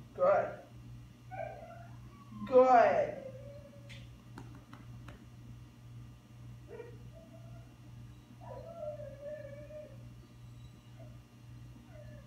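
Dog whining. A loud, drawn-out whine that falls in pitch comes about two and a half seconds in, and quieter thin whines follow around seven and nine seconds.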